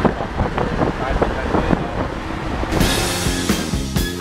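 Road and wind noise inside a moving car: a low rumble with gusts buffeting the microphone. About two-thirds of the way through, intro music with a steady beat comes in and takes over.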